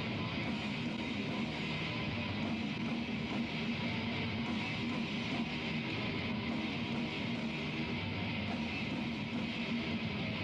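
Heavy metal band playing live: distorted electric guitars, bass guitar and drums in a steady, unbroken passage, heard from the audience on a lo-fi camcorder recording.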